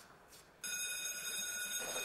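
Electric school bell ringing: a steady, unwavering ring that starts suddenly about half a second in.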